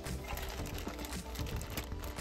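Clear plastic zip-top bag crackling and crinkling as it is picked up and handled, a quick run of sharp clicks, over background music with steady held notes.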